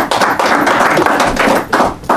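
Audience applauding with dense clapping, which eases off near the end.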